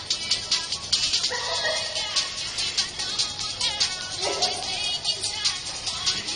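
Recorded music with a fast, steady beat, played from a phone.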